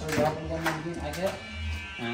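A man talking, with a steady electric buzz underneath.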